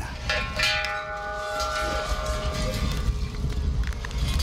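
A bell-like chime: several ringing tones struck together about a third of a second in, holding and fading over two to three seconds, over a steady low rumble, with a couple of sharp knocks near the end.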